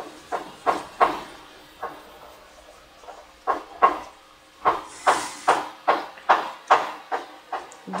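A crochet hook working thick cotton twine: short scratchy rustles as loops are pulled through. They come about two or three a second in the second half, after a quieter pause in the middle, with one brief hiss of yarn about five seconds in.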